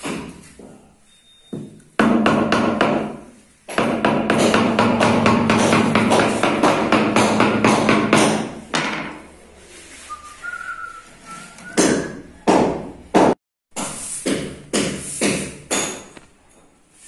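A wooden mallet tapping a marble floor slab to bed it into sand: sharp knocks, some in quick runs, more spaced out in the second half. Music plays loudly over the taps for several seconds in the first half.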